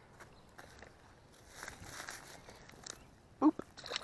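Faint handling clicks and rustling while a small largemouth bass is held, then a short voiced sound from the angler and a splash near the end as the bass is tossed back into the pond.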